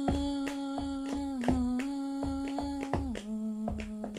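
Music: a woman humming long held notes that step down in pitch twice, over a steady rhythm of light percussive clicks, about three or four a second.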